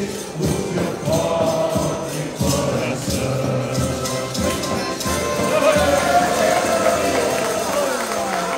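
Live piano accordion playing a lively tune, with a bass drum and tambourine keeping the beat.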